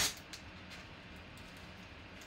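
A yellow paper envelope being handled on the table: a short crisp rustle at the start, a couple of faint paper ticks, then only a low steady room hum.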